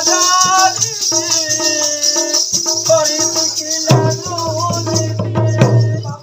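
Live Odia Danda nacha folk music: a singing voice and sustained melodic tones over a steady, continuous shaker-like rattle, with the low end growing louder about four seconds in.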